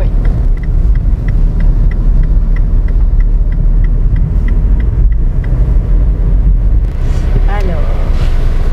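Cabin noise of a Mini Countryman with a 1.6-litre diesel engine: a steady low engine-and-road rumble. Over it, the turn-signal indicator ticks about three times a second, stopping about five seconds in.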